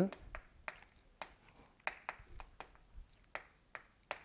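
Chalk tapping and scraping on a chalkboard as words are written: a string of short, irregular clicks.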